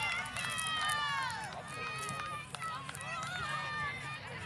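Several high-pitched voices shouting and calling over one another, with no words picked out.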